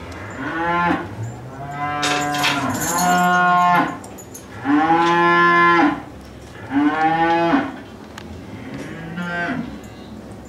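Dairy cows mooing repeatedly: about six drawn-out calls of around a second each, some overlapping, the loudest in the middle.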